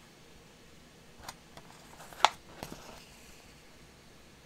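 Handling noise from a magazine being held and moved: a few small paper crinkles and taps, with one sharp click a little past two seconds in.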